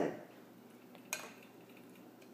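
A single light click about a second in, against quiet room tone.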